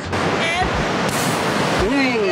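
Ocean surf washing, a steady rush of noise that swells louder and hissier for about half a second just past the middle.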